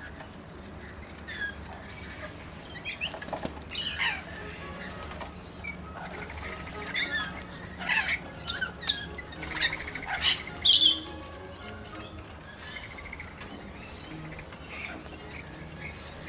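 A flock of rainbow lorikeets and corellas calling in short, sweeping calls, with wings flapping. The calls get busier partway through, and the loudest call comes about eleven seconds in.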